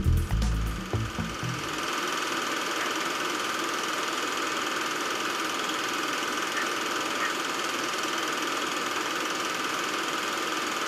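Strummed guitar music dies away in the first two seconds, leaving a steady, even mechanical whir.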